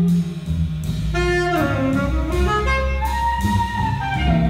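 Live jazz quartet: a saxophone plays an improvised melodic line over upright bass and drums, with electric guitar. The line breaks off briefly just after the start, then moves on and holds a longer note near the end.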